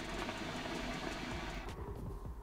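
Honor Hookah Rise Russian-style shisha bubbling steadily as a full draw is pulled through the water, stopping just before the end. The draw runs freely and quickly, which is typical of this hookah's very open draw.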